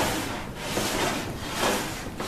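Plywood crosscut sled slid back and forth across a table saw top, its runners rubbing in the miter slots: three swishing sliding strokes. The runners are adjusted to slide smoothly with no side-to-side play.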